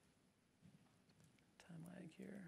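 Near silence with faint room noise, then a short, wordless hum from a man's voice near the end.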